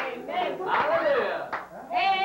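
A group of voices, adults and children, singing a hymn loudly with hand clapping in time. There are held sung notes and sharp claps, with a brief dip in loudness near the end.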